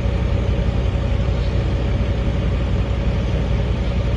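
An engine idling steadily, a constant low drone with a faint steady higher tone over it.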